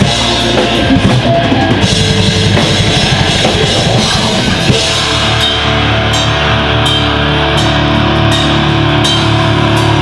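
A live rock band plays loudly on electric guitar, bass guitar and drum kit. For about the first half the drums play dense, fast hits. The band then moves to long held chords, with a cymbal crash about twice a second.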